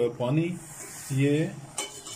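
A man's voice in a few short drawn-out syllables, with a spoon stirring chickpeas in a steel pot between them and a single metal clank near the end.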